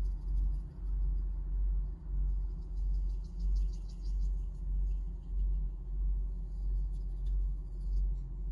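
A low rumble swelling and fading about once a second, with the faint scratchy ticking of a brush dabbing charcoal on paper, about two to four seconds in and again near the end.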